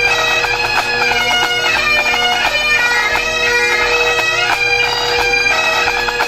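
Pipe band of Highland bagpipes and drums playing a tune: the pipes' steady drones hold under the chanter melody with its quick grace notes, while snare and bass drum strokes keep the beat.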